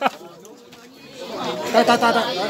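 Group of men chatting: a voice breaks off at the start, faint background talk carries through a short lull, and voices pick up again about a second and a half in.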